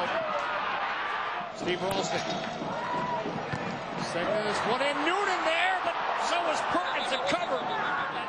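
Soccer TV broadcast: a man's play-by-play commentary over continuous stadium background noise, with a few short knocks.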